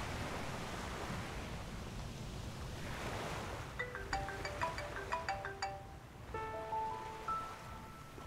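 Steady surf and wind noise. From about four seconds in, a tinkling melody of short, bright plucked notes comes in, settling into a few held notes near the end.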